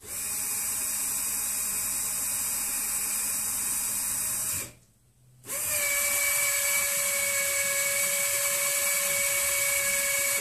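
Electric actuator of a Haswing Comax 12V trolling motor running steadily for about four and a half seconds to lower the prop unit, with the propeller switched off. It stops briefly, then runs again for about five seconds to raise it, this time with a clearer steady whine.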